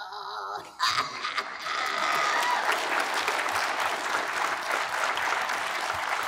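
Audience applause, made of many hands clapping, that breaks out suddenly about a second in and keeps going steadily.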